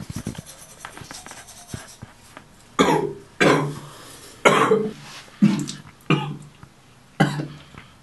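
A toothbrush scrubbing for the first couple of seconds, then a young man coughing hard six times over a sink, each cough a separate harsh bark, as he coughs up blood.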